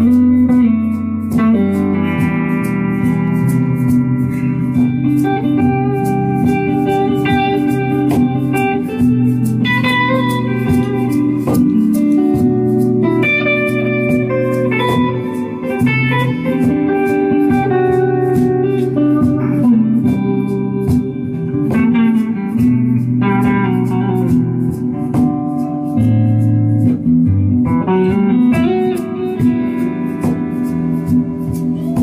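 Electric guitar playing a melodic blues-tinged instrumental line over held low bass notes, with a steady ticking beat above.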